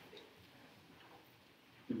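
Quiet church room tone with a few faint clicks, then a man's voice starts at the very end.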